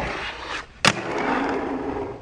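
Tech Deck fingerboard scraping along the edge of a box, landing with a sharp clack a little under a second in, then its small wheels rolling steadily across the desk top.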